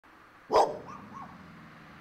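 A dog barks once, sharply, about half a second in.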